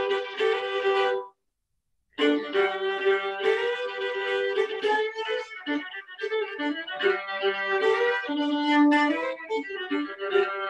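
Solo violin playing a short folk-style tune, its bowing varied to change how the phrase sounds. The sound comes through a video call and cuts out completely for about a second, shortly after the start.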